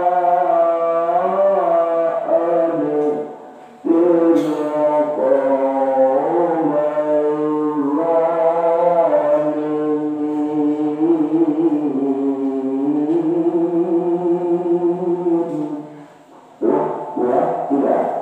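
A man's voice reciting the Qur'an in melodic tilawah style through a microphone, holding long, ornamented notes that slowly rise and fall. The voice breaks off for a breath at about three and a half seconds and again near the end.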